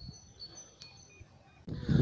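Faint songbird singing, a run of short high whistled notes repeating, with a single click about a second in. A man begins speaking near the end.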